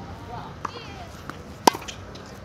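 A tennis racket striking the ball on a serve: one sharp pop about a second and a half in, with a couple of fainter taps before it.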